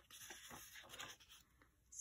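A paper planner page being turned in a six-ring binder: a soft paper rustle lasting about a second, then quiet.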